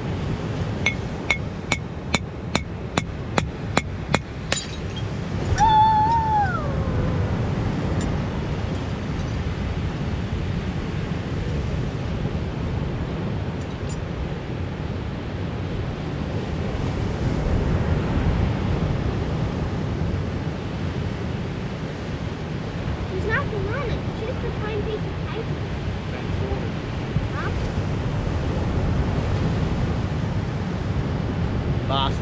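A hammer tapping a glass bottle, about ten sharp clinks a third of a second apart over roughly four seconds, ending in a louder knock as the bottle breaks open. Steady surf runs behind it.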